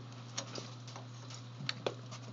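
Three light, sharp clicks over a steady low hum. The clicks come about half a second in and twice near the end.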